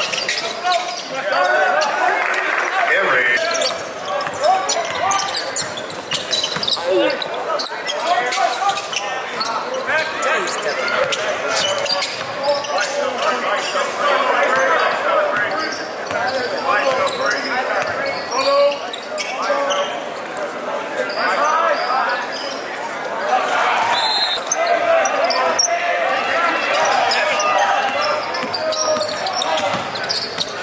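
Live gym sound of a basketball game: a basketball bouncing on the hardwood court amid a crowd of voices, which echo in the large hall.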